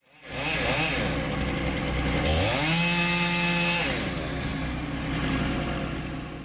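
Chainsaw engine running, with a few light throttle blips early, then revved up to high speed about two and a half seconds in, held for over a second, and let back down near four seconds.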